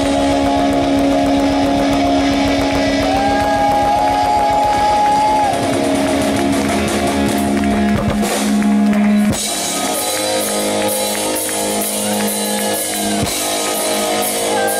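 Live rock band playing: electric guitar, bass guitar and drum kit. About nine seconds in the sound thins out, leaving held guitar notes over repeated cymbal hits.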